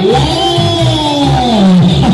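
DJ dance remix played loud through a sound system, a steady beat underneath. A long pitched sound with several overtones slides slowly downward through the whole two seconds, a pitch-bend effect in the track.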